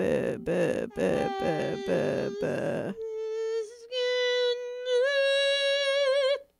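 Wordless vocal improvisation: a run of rhythmic groaning voice sounds over a steady held tone, then about halfway through a single clear sung note, held and stepped up in pitch twice, wavering near the end.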